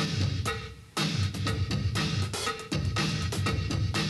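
Drum kit played in a funk groove with fills: snare, bass drum and cymbals struck in quick phrases, the fills laid slightly behind a click to add tension.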